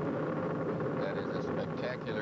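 A man's voice, hesitating, over a steady low rumbling background noise.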